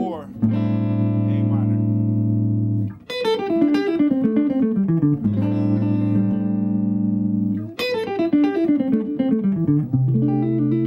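Guitar playing a C major seventh chord and letting it ring, then a fast descending single-note lick, the whole figure played twice.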